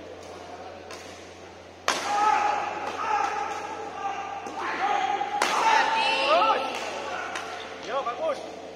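Badminton racket strikes on a shuttlecock during a doubles rally: a sharp crack about two seconds in, another after five seconds and a fainter one near the end, with court-shoe squeaks and voices in a large hall between them.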